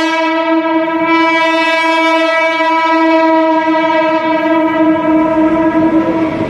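Indian suburban local train (EMU) sounding one long, steady horn blast as it pulls into the station, with the noise of the train running alongside growing beneath it near the end.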